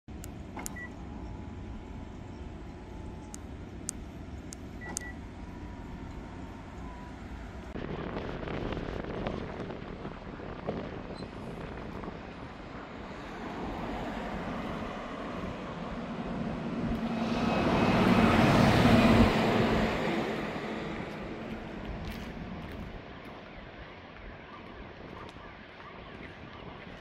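Outdoor traffic noise in a vehicle yard: a few light clicks in the first five seconds, then a vehicle passing close by, its rush of noise and low hum swelling to a peak about two-thirds of the way through and fading away.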